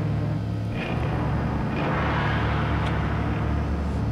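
A steady low hum, with a soft hiss that swells in the middle.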